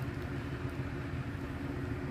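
Steady low mechanical hum of a motor running, with an unchanging drone and no separate events.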